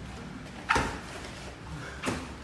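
A sharp slap of a gloved strike landing during sparring, about two-thirds of a second in, with another starting right at the end.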